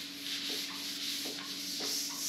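Whiteboard eraser rubbing across a whiteboard in repeated back-and-forth strokes, wiping off marker writing.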